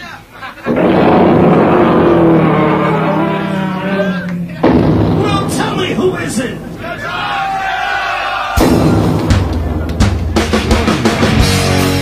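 Live rock band and crowd: a loud swell of stage noise and audience shouting builds in two surges. About eight and a half seconds in, the full band comes in with drums and a heavy distorted guitar riff.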